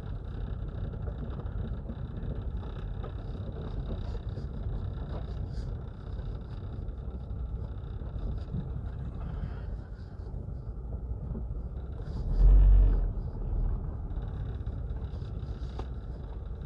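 Car interior noise while driving slowly on a dirt road: a steady low rumble of engine and tyres, with one brief, loud low thump about twelve seconds in.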